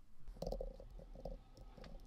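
A few faint computer-keyboard clicks as a name is typed, under a low, uneven hum with a deep rumble beneath it, which starts about a third of a second in and fades near the end.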